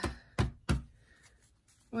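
Two sharp knocks about a third of a second apart, from a deck of cards being handled against a hard tabletop.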